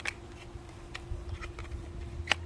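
Light clicks and ticks of hard plastic skimmer-basket parts knocking together as the top half is slid into the housing. There is one sharper click at the very start, then a couple of fainter ticks.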